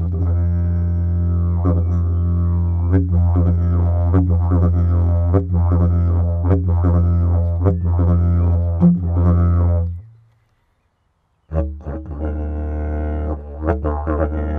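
Didgeridoo played with a steady low drone, rhythmic accents and mouth-shaped sweeps in tone. It stops about ten seconds in. After a short silence a second didgeridoo starts up with a similar low drone.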